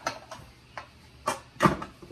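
Five light knocks and clicks spread over two seconds, the last two loudest, from kitchen things being handled at a counter.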